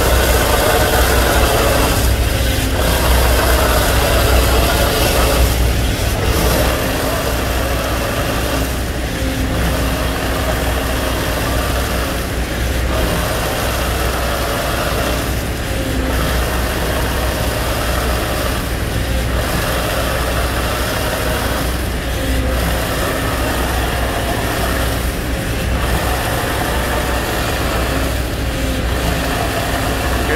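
Shotcrete rig running: a steady engine drone with the hiss of air-blown concrete spraying from the hose nozzle, pulsing about every three seconds.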